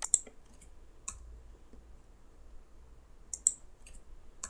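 Computer keyboard and mouse clicks while pasting code: a few sharp clicks, a pair at the start, one about a second in and a quick cluster about three and a half seconds in.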